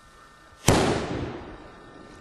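About 90 g of potassium permanganate flash powder exploding: a single sharp bang about two-thirds of a second in, dying away over about a second.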